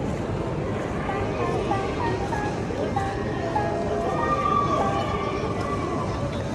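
Indistinct voices and background music, with a held tone about four seconds in; no distinct sound from the robot or the dispenser stands out.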